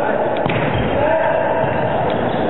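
A volleyball struck hard by hand in a jump serve, a single sharp smack about half a second in, over steady chatter and shouting from players and spectators.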